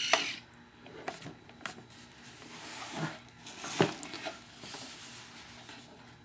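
Scattered handling noises from an RC model aircraft's wing and nacelle parts: a few light knocks and rubs, the loudest nearly four seconds in, as the parts are moved over a wooden workbench.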